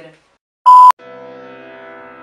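A short, very loud beep, a single steady high tone lasting about a quarter of a second and ending in a sharp click, about half a second in. Soft, sustained piano-like background music starts right after it.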